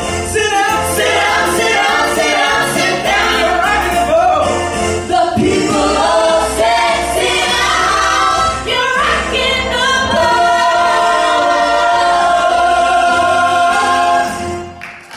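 A five-voice vocal group singing in close harmony through handheld microphones, with a low bass part under the voices. In the last few seconds they hold a long, steady chord.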